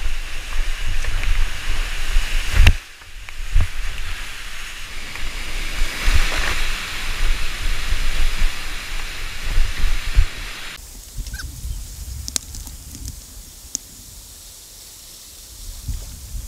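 Whitewater rushing around a creek kayak as it runs a steep slide, with low thumps from water and wind buffeting the camera. About eleven seconds in the rush drops away to a much quieter flow with a few sharp splashes.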